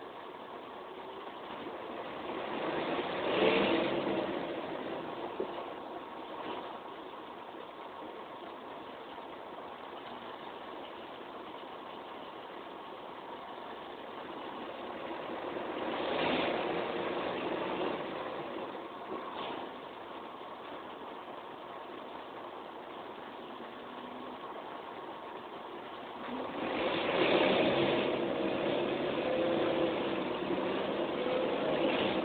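Mercedes-Benz O405N bus's six-cylinder diesel heard from inside the saloon, running steadily and rising in pitch and loudness as it accelerates three times: about three seconds in, around sixteen seconds in and near the end.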